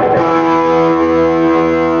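Distorted electric guitars holding one sustained chord, struck just before and left ringing steadily through amplifiers, with no drums.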